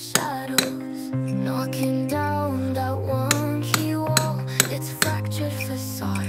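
Indie music track: a held bass line that steps to a new note about once a second under higher pitched parts, with sharp knocks scattered irregularly through it.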